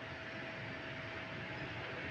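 Low, steady room tone: an even background hiss with a faint steady hum-like tone running through it.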